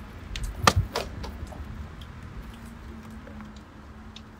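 A few short sharp clicks within the first second and a half, over faint background noise, then a faint steady low hum.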